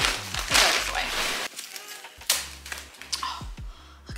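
Plastic wrapping crinkling and a cloth dust bag rustling as a handbag is unwrapped: a long crackling burst in the first second and a half, then two shorter bursts.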